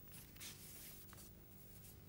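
Near silence: faint background hiss and low hum.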